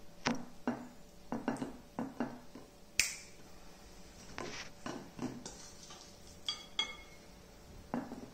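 Metal spoon tapping and scraping against a glass mixing bowl and bagel halves while scooping and spreading a soft cheese and smoked salmon spread. It makes a series of light, irregular clicks and taps, the sharpest about three seconds in, and a couple near the end ring briefly like a spoon on glass.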